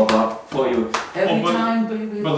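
A man singing out a rhythm in wordless syllables, with a couple of sharp taps; the last syllable is held on a steady pitch.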